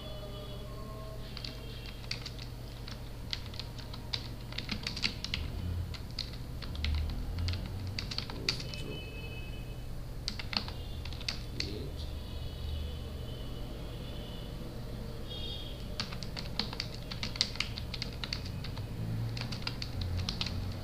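Computer keyboard typing: runs of quick keystrokes broken by short pauses, over a steady low hum.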